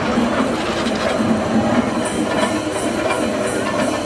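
Festival procession music over crowd noise. About halfway in, a regular high-pitched beat of roughly three strokes a second comes in.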